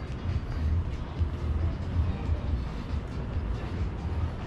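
Walking street ambience picked up by a GoPro Hero8 action camera: a steady, unevenly pulsing low rumble over a general hiss of the street, with faint light knocks.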